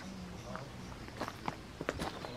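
Faint footsteps of a person walking: a few light scuffs and taps, mostly in the second half.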